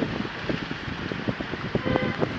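Wind rushing over a phone microphone outdoors, with irregular soft knocks and crackles from handling.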